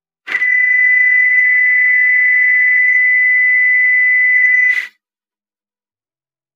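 A loud, steady, high-pitched electronic tone, one held pitch, starting and stopping abruptly and lasting about four and a half seconds, with the music cut out around it.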